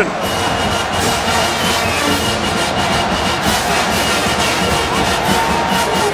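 Football stadium crowd noise with music playing over it, at a steady level.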